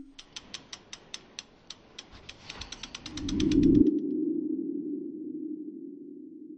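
Animated-logo sound effects: a run of sharp ticks, at first about four a second and then faster, stopping about four seconds in. Under the last of them a low hum swells and then slowly fades away.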